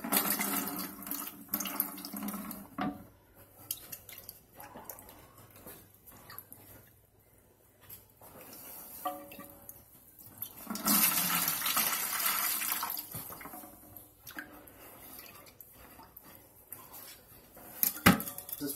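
Leftover water being sponged out of an emptied toilet tank and wrung into a bucket: water sloshing and trickling in bursts, loudest for about two seconds a little past the middle.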